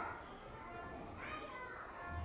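Faint chatter of young schoolchildren's voices in a classroom.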